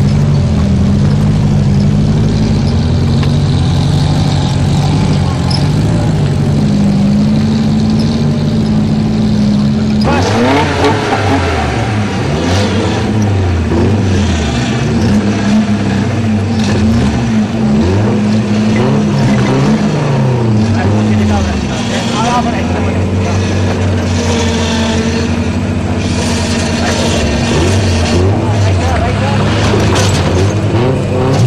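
A 4x4 engine idling steadily. About a third of the way in this changes abruptly to a trial 4x4's engine revving up and down again and again under load as it climbs a steep rocky slope.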